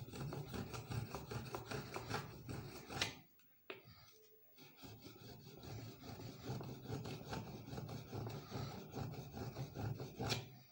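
A steel blade rubbed back and forth on a fine, water-wetted sharpening stone in quick rasping strokes. The strokes stop for about a second and a half after three seconds, with one small click in the gap, then start again.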